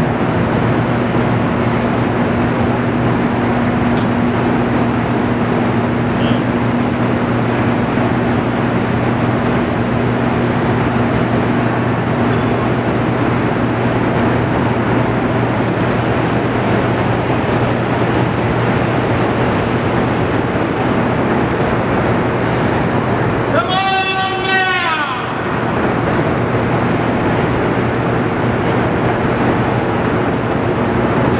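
Steady hum and rumble of a hydroelectric generator hall, with a low electrical hum throughout, under background voices of a tour group. About 24 seconds in, a brief pitched sound bends over it for a second or two.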